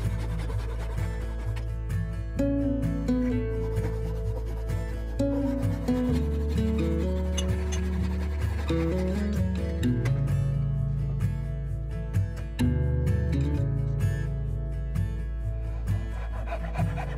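Background music with held bass notes and a stepping melody. Under it are the rasping strokes of a hand saw cutting hardwood.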